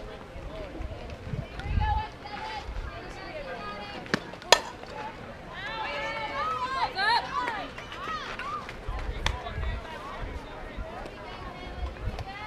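Players and spectators at a softball game calling out and chanting, several high voices at once, loudest in the middle of the stretch. A single sharp crack comes about four and a half seconds in, and wind rumbles on the microphone now and then.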